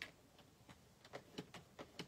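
A few faint, scattered light clicks and taps as white card stock is pressed and lined up on a paper trimmer's track and the blade carriage is taken in hand.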